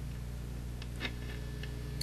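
AA5 tube radio's speaker giving a steady low hum, the weak station barely audible because the added 33 µF capacitor holds the AVC voltage down and keeps the tubes' gain low. A few faint ticks come near the middle.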